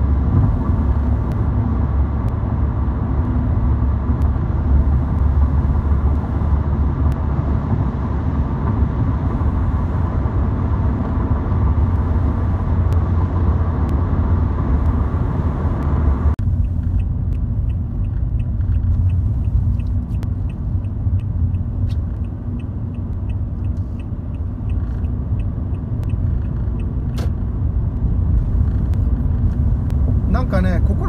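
Car road noise heard from inside the cabin at freeway speed: a steady low rumble with tyre and wind hiss. About halfway through the sound suddenly turns duller, the hiss drops away and the rumble carries on, with faint regular ticking for a few seconds after the change.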